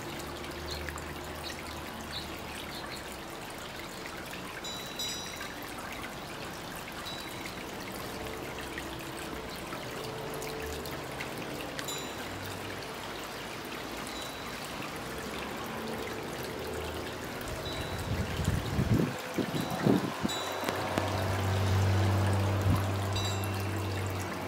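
Water from a three-tier garden fountain trickling steadily over the rim of the top bowl. Louder low swells and a low steady hum come in over the last several seconds.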